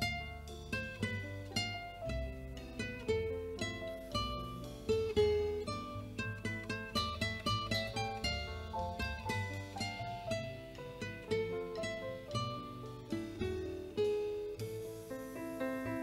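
Nylon-string classical guitar played fingerstyle in an instrumental interlude between sung verses: a quick melodic run of plucked notes, several a second, over low bass notes.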